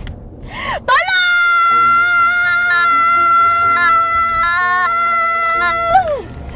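A woman's long, high-pitched scream, held on one steady pitch for about five seconds, over quiet background music.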